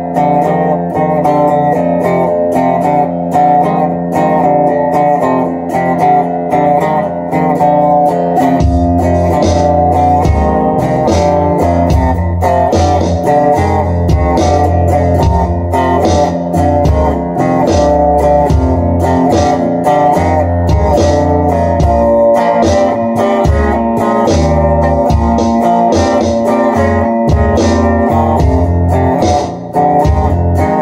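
Six-string cigar box guitar with a twin-rail humbucker pickup, played electric through a small Fender amp, with drum accompaniment from a trio pedal. A bass line from the pedal comes in about eight or nine seconds in.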